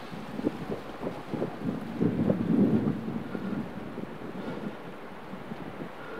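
Wind rumbling on an outdoor microphone, with a few faint knocks and a louder gust about two seconds in.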